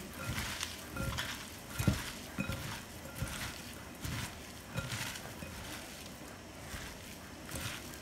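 Chopped vegetables being mixed by hand in a bowl with oil and salt: soft, irregular rustling with occasional light taps of the utensil against the bowl.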